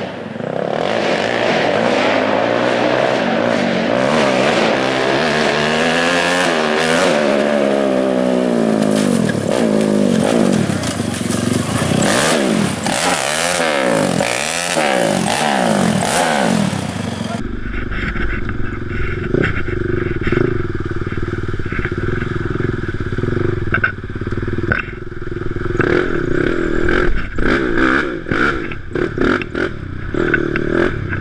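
A Honda TRX450R sport quad's single-cylinder four-stroke engine, with a full DASA Racing exhaust, revving up and down again and again. About halfway through it gives way to a quad engine running under load, heard from an onboard camera with a deep rumble on the microphone and scattered knocks.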